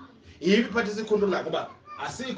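A person's voice speaking in long, drawn-out syllables, starting about half a second in.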